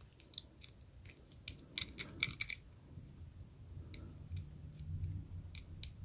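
Small Master Lock combination padlock's dial being turned with the shackle held up, giving faint scattered clicks as it is worked through the gates to find the third number. The clicks bunch together about two seconds in, with a few more later.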